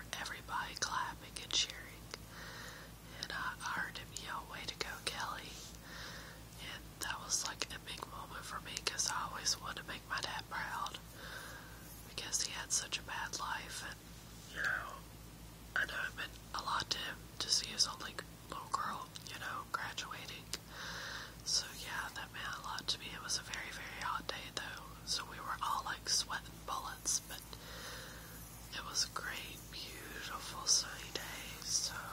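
A woman whispering softly throughout, with sharp hissing consonants, over a faint steady low hum.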